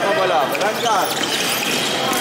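Fencing shoes squeaking on the piste during footwork: many short, overlapping chirps that rise and fall quickly in pitch.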